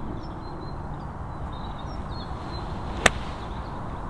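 A golf club striking the ball on a full shot from the fairway: one sharp crack about three seconds in, against quiet open-air background.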